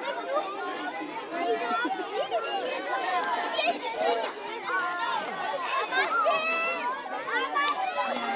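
A group of young children chattering over one another, many high-pitched voices at once with no single clear talker.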